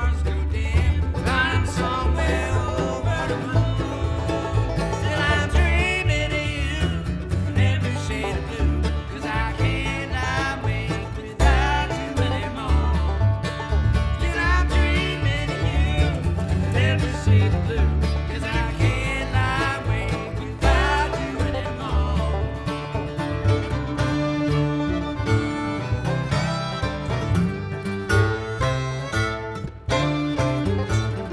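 Bluegrass string band playing an instrumental passage with no vocals: banjo, acoustic guitar and upright bass over a steady, driving rhythm.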